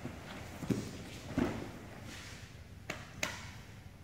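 Two grapplers in gis moving on a padded mat: a soft thud as one is knocked over onto the mat, then shuffling, and two sharp clicks near the end.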